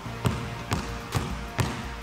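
A basketball dribbled on a hardwood gym floor: four even bounces, about two a second, as the ball is crossed low from hand to hand.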